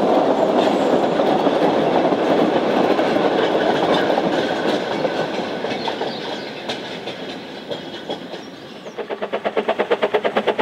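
Narrow-gauge train carriages rolling past on the rails with steady wheel and rail noise, fading as the train moves away. About nine seconds in, a rapid, even chuffing starts: the exhaust beats of the steam locomotive Prince working along the line.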